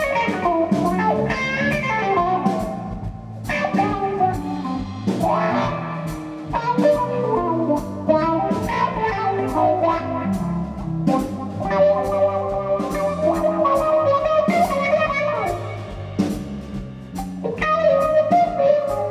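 A live blues-rock band: an electric guitar plays lead lines with bent notes over electric bass and a drum kit, without vocals.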